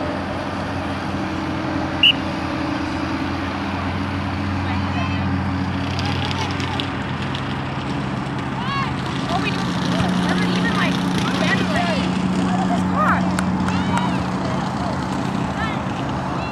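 A single short, shrill referee's whistle blast about two seconds in, over a steady low hum. Distant shouts and calls from players and spectators follow as play resumes.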